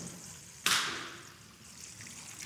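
Water poured from a glass pitcher into a baptismal font: a splash about half a second in as the stream hits the bowl, then a trickle that fades away.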